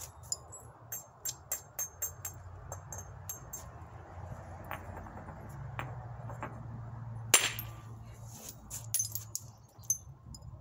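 Hard-hammer flintknapping: a hammerstone striking a stone core, heard as a run of sharp stone-on-stone clicks and taps. There are several light taps in the first few seconds and one hard strike about seven and a half seconds in, the loudest sound, typical of knocking a large flake off early in reducing a core towards a biface.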